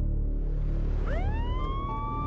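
Ambulance siren starting up about a second in, its pitch sweeping quickly upward and then levelling off into a steady wail, over a low droning music bed.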